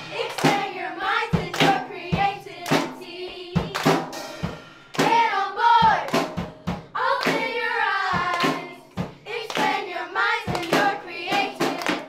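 Children singing a song with a steady beat, clapping their hands in time with it.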